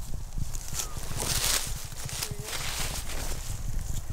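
Footsteps crunching and shuffling through dry leaf litter, irregular, with the loudest crunches about a second and a half in, over a steady low rumble.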